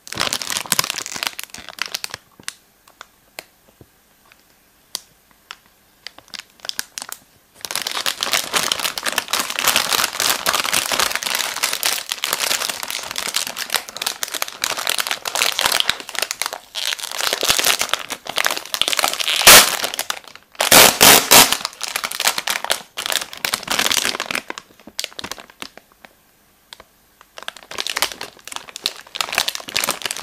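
Plastic film wrapper of a Milka Choco Moooo biscuit pack crinkling as hands handle it and peel it open, in bursts with short pauses. A few sharp, louder crackles come about two-thirds of the way through.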